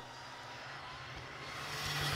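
Rally car's engine approaching from a distance: a steady drone that grows louder through the second half.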